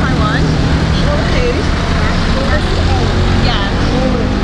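Street traffic: a steady low engine hum from scooters and cars on the road, with indistinct voices of people talking over it.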